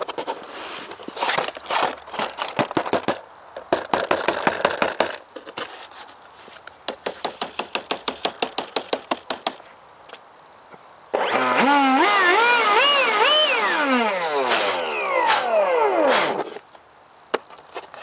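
Crunching and rustling handling noises and a quick run of ticks. Then, about eleven seconds in, the foam RC jet's 70mm electric ducted fan comes in loudly with a wavering pitch and spools down, its pitch falling, and stops a couple of seconds from the end.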